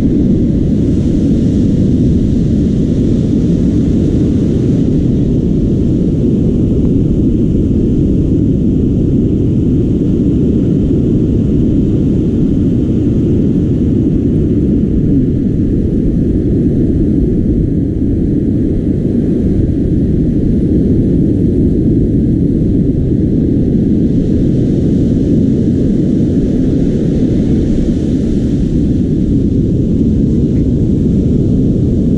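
Ocean surf breaking and washing up the beach, under a steady low rumble of wind buffeting the microphone; the hiss of the waves swells near the start and again near the end.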